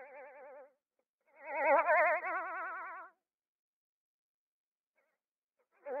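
A warbling tune whose every note wobbles fast and evenly in pitch, in short phrases with silences between: one phrase fades out just after the start, a louder one runs from about one to three seconds in, and another begins near the end.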